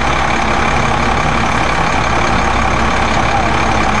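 Steady drone of an idling engine, an unbroken noise over a constant low hum.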